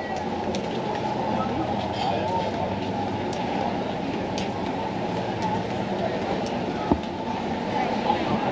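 Busy street ambience: a steady rumble of traffic with background voices, and one sharp click about seven seconds in.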